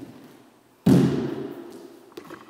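A single sudden, loud thud about a second in, dying away over the next second.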